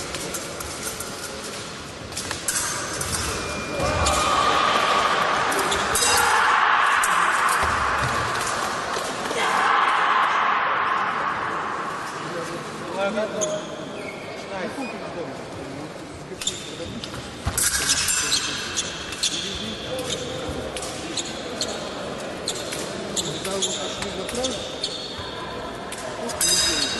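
Fencing bout in a large, echoing sports hall: the fencers' feet thumping on the piste, with scattered sharp clicks and voices around the hall.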